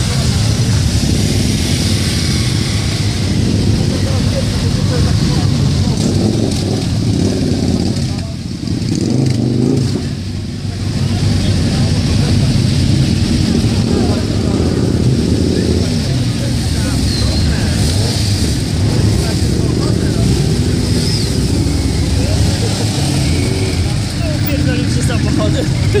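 Many motorcycle engines running as a line of bikes rides slowly past, with people talking in the crowd.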